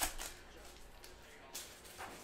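Plastic wrapper of a cello pack of trading cards crinkling as it is torn open by hand. There is a sharp crackle at the start, smaller rustles after it, and another crackle about one and a half seconds in.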